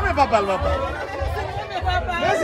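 Several voices talking and exclaiming over one another, with low rumbling underneath.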